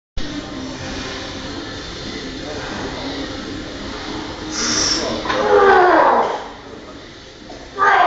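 A man's loud wordless strain yell, falling in pitch, as a 120 kg strongman log is pulled off the floor, just after a sharp hiss of breath; a second short grunt near the end as the log comes up to the chest.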